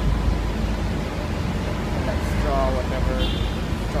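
Steady low background rumble, with a brief voice heard a little past the middle and a short high tone just after it.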